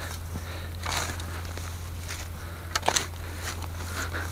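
A spade digging into grassy turf and soil: a scraping crunch about a second in, then a few sharper crunches near three seconds.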